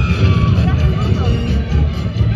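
Halloween parade music playing loudly from a passing float's speakers, with a heavy bass line.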